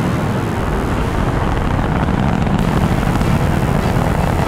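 Rocket thrusters running with a steady, deep rumble: a sound effect for a building-sized craft blasting through space.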